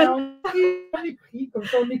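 A brief phrase of plucked-string music, two notes each ringing out for about half a second, followed by short snatches of voice.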